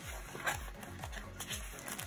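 A cardstock envelope being unfolded and sticker sheets handled, with light paper rustling, over background music that has a low falling tone repeating about twice a second.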